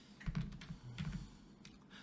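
Soft, scattered clicks of a computer keyboard, a few key presses that advance a slideshow.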